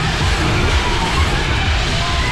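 On-board sound of a fairground ride in motion: steady rumble and wind buffeting on the microphone, with fairground music playing over it.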